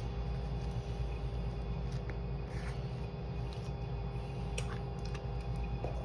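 A steady low room hum, with a few faint scattered clicks and light scrapes as peanut butter is spread onto a tortilla and the things on the table are handled.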